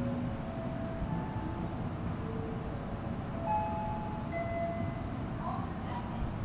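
Low, steady rumble of a train at the platform, with a few short faint tones at shifting pitches over it.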